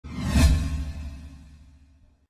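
An intro whoosh sound effect over a deep rumble, swelling to a peak about half a second in and then fading away over the next second and a half.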